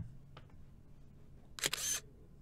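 A camera shutter sound going off once near the end as a photo is taken, a short crisp click-and-swish. A faint click comes about half a second in.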